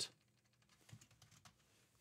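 A few faint computer-keyboard keystrokes about a second in, otherwise near silence.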